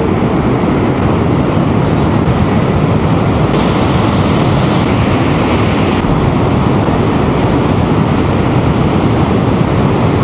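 Steady, loud rushing of the water of Niagara's Horseshoe Falls pouring over the brink close by, turning hissier for a couple of seconds in the middle.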